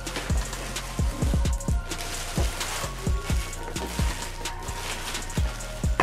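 Clear plastic wrapping crinkling and rustling as it is pulled off a garment steamer's body and hose, with irregular light knocks from handling, over steady background music.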